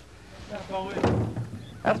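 Men's voices talking, with a short knock or thud about a second in.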